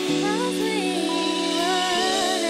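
Live band music: sustained chords held steady under a wordless melody line that glides and bends up and down.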